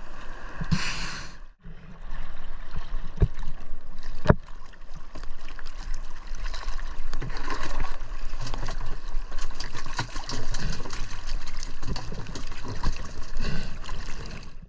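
Choppy sea water sloshing, splashing and gurgling around a camera held at the surface, with two sharp knocks a few seconds in.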